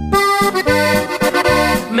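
Accordion-led corrido music in an instrumental passage: the accordion plays a melody over a steady bass beat, with no singing.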